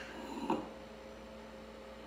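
Steady low electrical hum, with one brief soft sound about half a second in.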